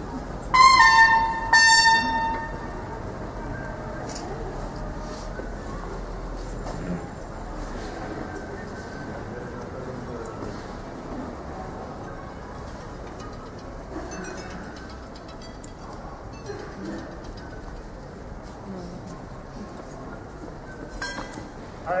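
Two short bugle notes about a second apart, the second a little lower and dropping in pitch at its end, followed by a low open-air murmur with faint voices.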